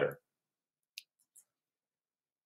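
Near silence with a single faint click about a second in and a couple of tiny ticks just after it, from a computer mouse as the code editor on screen is scrolled.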